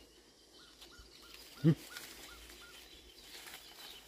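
A bird calling: a quick series of short, high, repeated notes, about four a second, over a couple of seconds. A brief low sound stands out about halfway through.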